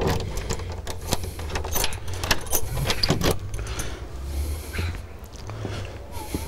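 A rapid run of sharp clicks and small rattles over a low steady hum, thickest in the first three and a half seconds and then thinning out.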